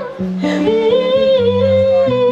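A woman singing long held, wavering notes over a live band with guitar; a short break in the voice near the start, and a new sustained note begins about half a second in.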